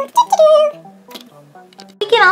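Light background music. In the first moment, short high wavering meow-like calls sound over it, then the tune carries on more quietly.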